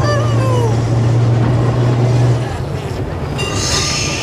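Electric tram running along its track, heard from the top deck: a steady low hum that drops away about two and a half seconds in, with a high wheel squeal near the end.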